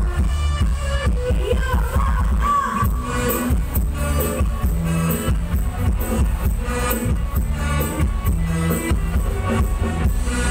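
Loud music with heavy bass and a singing voice, played over a Thai rot hae parade truck's loudspeaker system.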